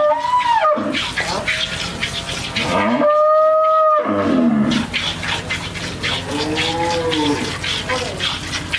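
Cows mooing: a short call right at the start, a long steady call about three seconds in, and a lower call near the end. Under the calls, a quick run of milk squirts from hand-milking hits a metal pail.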